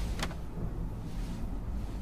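A car engine's low, steady rumble, with one brief sharp click about a quarter of a second in.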